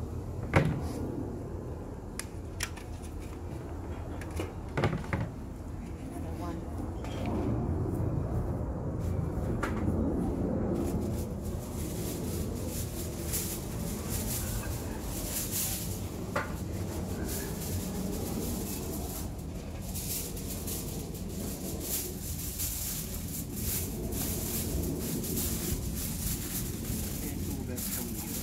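Handling noises from outdoor food preparation: a few sharp knocks, the loudest about half a second in, then steady rustling with small clicks from about eleven seconds in. Faint voices run underneath.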